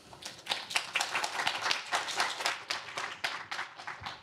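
Audience applauding, a dense patter of hand claps that tails off near the end.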